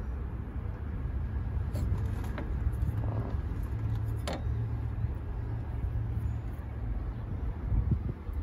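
Steady low outdoor rumble of background noise, with a few faint clicks about two and four seconds in.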